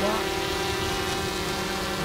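GoPro Karma quadcopter hovering close by, its four electric motors and propellers giving a steady buzzing hum.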